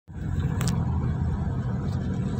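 Steady low road and engine rumble of a moving car, heard from inside the cabin, with a brief sharp click a little over half a second in.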